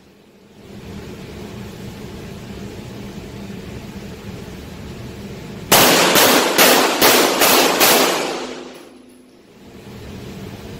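Glock 17 9mm pistol firing a quick string of about six shots, roughly 0.4 s apart, starting just before the middle, while the shooter walks forward. Each shot echoes in an indoor range and the echo dies away about a second after the last shot.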